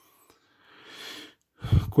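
A short, soft breath-like hiss, then a man's voice starting near the end.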